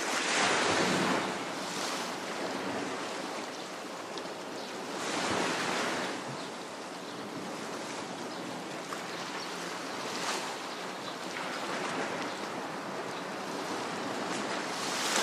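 Small waves washing onto a seashore, each wave swelling and fading away, about one every five seconds.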